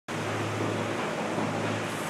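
Steady rushing noise with a low steady hum underneath.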